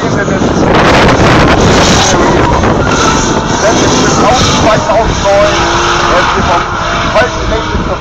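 A drift car's engine held at high revs as the car slides sideways through a corner, loud and continuous.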